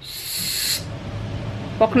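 A loud hushing "shh" lasting under a second, followed by a faint low sound.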